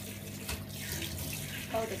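Handheld shower head spraying a steady stream of water onto a wet puppy and into a bathtub: an even hiss of running water.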